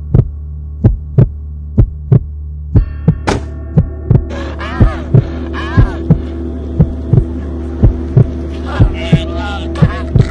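Heartbeat sound effect, a double thump repeating a little under once a second over a steady low drone. From about halfway in, a man's dying groans and gasps come in over it.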